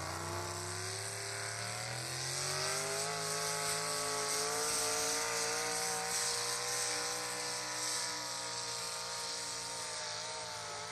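Small-block V8 pickup truck pulling a weight-transfer sled at full throttle. The engine revs up over the first three seconds, then holds at high revs under load, sagging slightly lower near the end as the sled drags harder.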